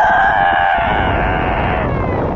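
One long, high-pitched scream from a person voicing a toy character, held steady with a slight wobble and easing down in pitch.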